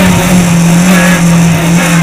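Rally car's engine heard from inside the cockpit while racing on a stage, running loud and near-steady at high revs, its note dipping slightly now and then.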